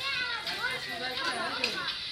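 Several high-pitched voices talking and calling out over one another, like a group of children or young onlookers.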